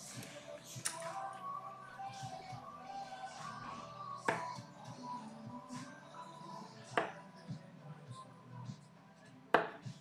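Steel-tip darts striking a bristle dartboard, three sharp single hits a few seconds apart, about four, seven and nine and a half seconds in. Faint background music and room murmur run under them.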